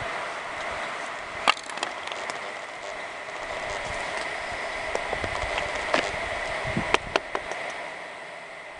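Steady wind hiss on the microphone, with a few sharp wooden clicks and taps from a knife worked against a willow fireboard: one about a second and a half in, then a cluster in the last three seconds.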